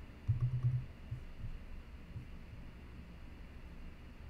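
Quiet desk sounds of a computer keyboard and mouse in use: a quick cluster of soft clicks and low thuds about a third of a second in, then a few scattered single ones.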